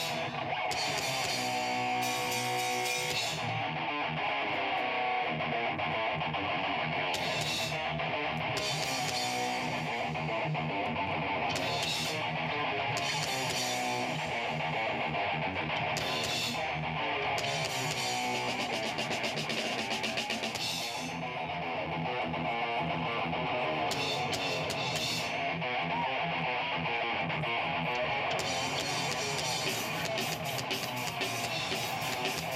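A rock band playing live: guitars and a drum kit, with high, hissy cymbal-like bursts that come and go every few seconds.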